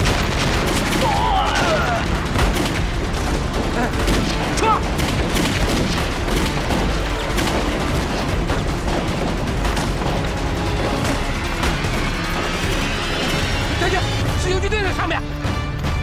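Battle-scene soundtrack: rifle fire and explosions going on throughout, with brief shouts, over background music.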